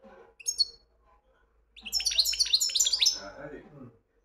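European goldfinch: a short high call about half a second in, then a rapid twittering phrase of quick, falling notes.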